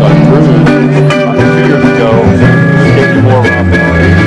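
Live band playing the instrumental opening of a trop rock song, led by guitars over bass and drums.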